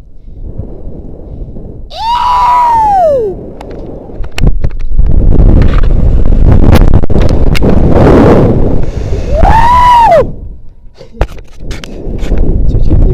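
A rope jumper yelling twice, each cry rising and then falling in pitch, about two seconds in and again near ten seconds. Between the cries, loud wind rushes over the action camera's microphone during the free fall and swing.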